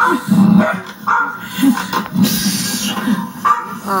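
A dog barking, a series of short barks one after another.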